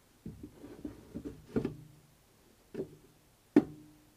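An MDF speaker panel knocking against the hard plastic shell of a motorbike pannier as it is fitted: light taps and rubbing, then three firmer knocks, each followed by a short hollow ring, the last and loudest near the end.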